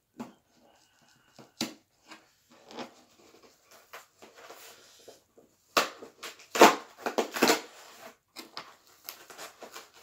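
Cardboard book mailer being handled and pried open by hand: scattered scrapes and crinkles, then a louder spell of cardboard tearing and crackling about six to eight seconds in.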